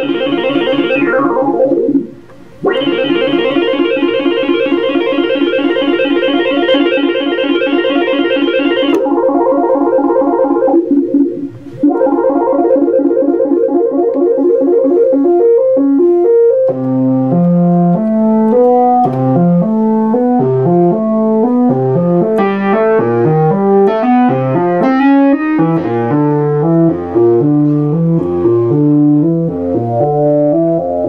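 Moog analog synthesizers, a Moog Source driving a Micromoog, sound a long buzzy held note. Its brightness falls away about a second in as the filter is turned down, and the note cuts out briefly twice. About halfway through it changes to a quick run of short notes in a repeating melodic pattern with a low bass line, several notes a second.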